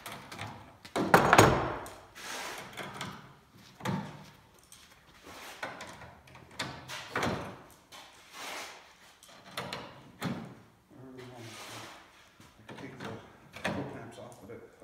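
Irregular knocks and clatter from hands-on work with tools and metal, the loudest a sharp knock about a second in.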